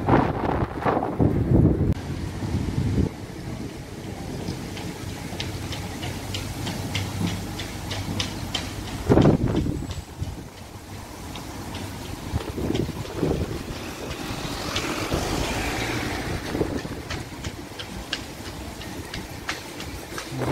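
City street ambience: a steady low rumble of traffic with wind on the microphone. Louder low rushes come near the start and about nine seconds in, with faint regular ticks in between.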